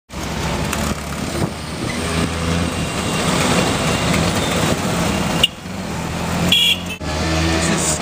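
Busy city-street traffic with vehicle engines running close by, and a brief high beep about six and a half seconds in.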